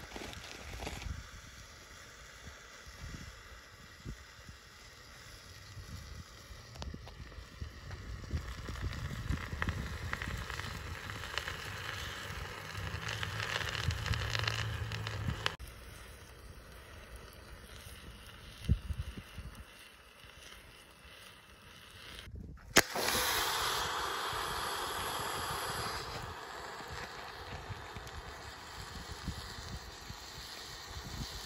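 Wood fire crackling and hissing in a steel fire pit, with wind rumbling on the microphone. Scattered sharp crackles, and the sound changes abruptly twice, ending in a louder, steadier hiss.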